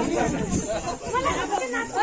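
Several people talking over one another in a group, a loose chatter of overlapping voices with no music.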